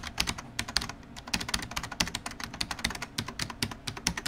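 Computer-keyboard typing sound effect: a fast, uneven run of light key clicks, several a second, that goes on throughout.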